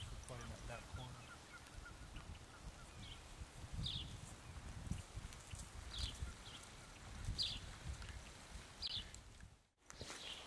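Quiet open-air ambience: a low steady rumble with short, high bird chirps, about six of them spaced a second or so apart.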